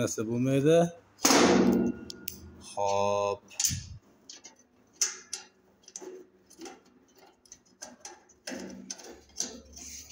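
Sheet-metal housing of an electric forage chopper being handled: a brief scrape about a second in, a sharp knock a little later, then scattered light clicks and taps. The machine is not running.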